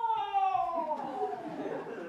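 A high voice drawing out one long wailing cry that slides steadily down in pitch, fading and roughening near the end.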